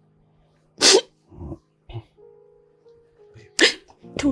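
A woman crying, with two short, loud, sharp sobs, one about a second in and one near the end, and softer catches of breath between them, over soft background music.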